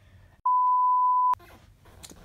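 A single steady high-pitched electronic bleep, just under a second long, laid over muted audio the way a censor bleep is, cutting off with a click.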